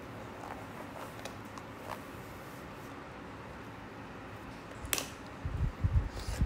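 Quiet room tone: a steady low hiss with a few faint clicks, one sharper click about five seconds in, and a few soft low thumps near the end.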